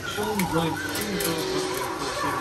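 Voices talking over 1/24-scale Carrera digital slot cars running on the track.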